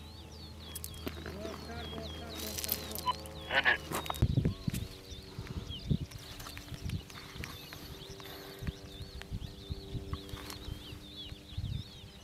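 Open-country ambience with birds chirping continuously, high and quick, under scattered light clicks and knocks of handled gear.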